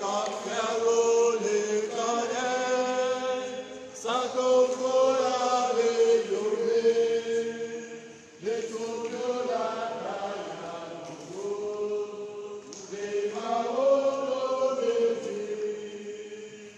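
Choir singing a processional hymn in long held phrases, with short breaks about four and eight seconds in.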